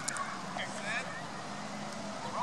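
Faint, distant voices of players and onlookers talking on an open field, with a steady low hum underneath.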